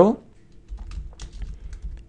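Computer keyboard being typed on: a quick run of separate key clicks, starting about half a second in.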